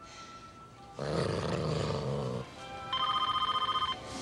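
A long breathy sigh lasting over a second, followed about half a second later by a rapidly pulsing, trilling ring, like a telephone bell, lasting about a second.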